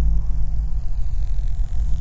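A low, steady rumbling drone with a faint hiss above it, the sound bed of a glitchy title intro.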